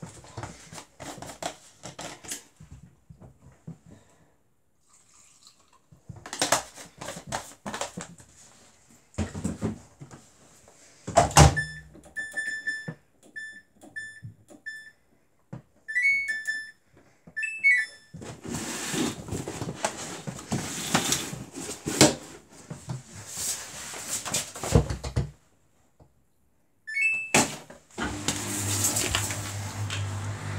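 Samsung Bespoke AI WW11BB704DGW front-loading washing machine being set up. Handling clicks and rustles come first, then the door shuts with a loud thump about eleven seconds in. A series of short control-panel beeps and rising chimes follows as the programme and options are selected, and near the end a steady low hum starts as the cycle begins.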